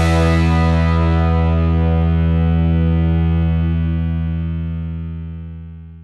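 The final chord of a rock song, played on a distorted electric guitar, left to ring out. It holds steady for about three seconds, then slowly fades away to nothing near the end.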